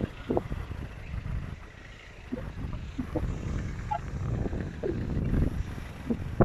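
Wind buffeting a phone microphone in gusts, heard as an uneven low rumble, with a few faint short calls scattered through it.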